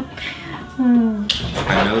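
People laughing, with a drawn-out, slightly falling vocal note about a second in and breathy laughter near the end.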